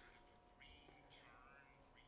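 Near silence: faint, distant speech in the background.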